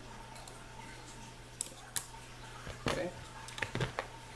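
Scope rings clicking and knocking against a rifle's scope rail as they are handled and slid into position: two sharp clicks near the middle, then a quick run of knocks near the end, over a steady low hum.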